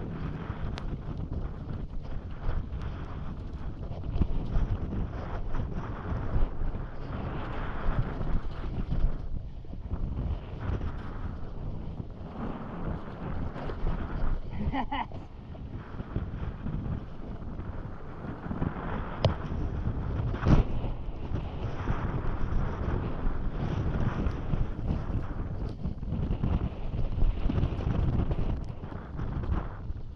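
Wind rushing over the camera microphone as a downhill mountain bike descends a rough dirt trail, with the tyres rumbling over the ground and scattered knocks and rattles from the bike over bumps, the sharpest about two-thirds of the way through.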